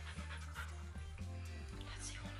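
A dog panting with its mouth open, over background music.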